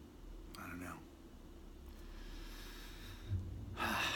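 A man breathing during a pause: a short breath about half a second in and a louder breath in near the end, with a faint low thump just before it.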